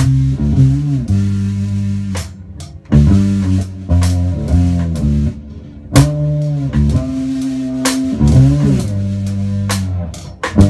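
Two-string electric bass playing a low riff of held notes with a drum kit, sharp cymbal and drum strikes landing about six, eight and just under ten seconds in. The band drops out briefly twice.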